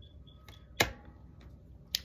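A sharp click a little under a second in and a shorter click just before the end, over quiet room tone.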